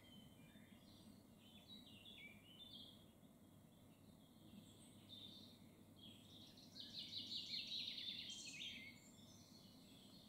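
Faint songbird song: scattered short high chirps, with a louder, rapid song phrase between about seven and nine seconds in.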